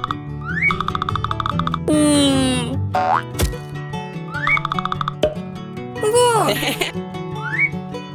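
Light cartoon background music with comic sweeping-pitch sound effects over it. A loud falling glide comes about two seconds in, and a boing-like sound that rises and falls in pitch comes about six seconds in.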